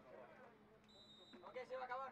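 Very faint voices over a low steady hum, with a short high steady beep about a second in.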